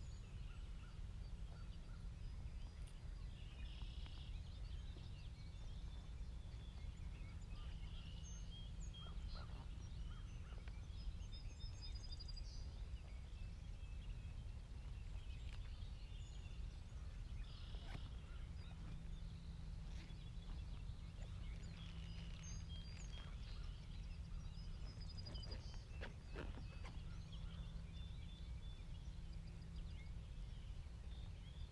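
Outdoor morning ambience: scattered bird calls recurring every few seconds over a steady low rumble, with a few faint clicks.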